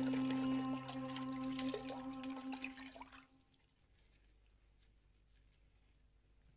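Water splashing and dripping as a cleaning cloth is wrung out in a plastic bucket, over held background music chords; both fade out about three seconds in.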